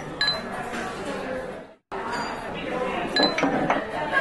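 A glass tumbler knocked against a bar counter, giving sharp ringing clinks: once shortly after the start and a few more near three seconds in, over a steady bed of voices. The sound drops out completely for a moment just before the halfway mark.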